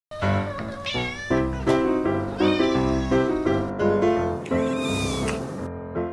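A domestic cat meowing about three times, each meow a gliding call, over background music with a steady beat.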